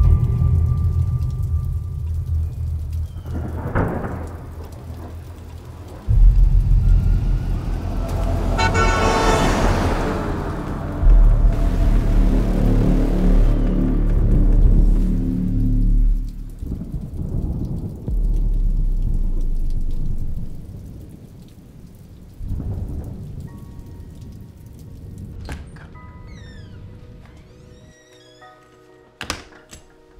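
Film soundtrack music with heavy, deep rumbling swells and a rising whoosh that peaks about nine seconds in. The low drone fades after about twenty seconds into quieter, sustained tones.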